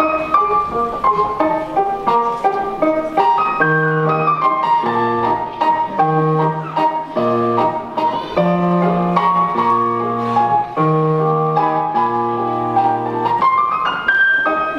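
Piano music for a ballet: quick, short notes at first, then about four seconds in, held low chords come in under the melody and recur every second or so.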